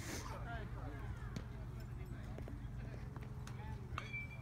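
Faint, high-pitched children's voices calling out across an open field, a few short calls, over a steady low rumble of wind on the microphone. There are a few small clicks.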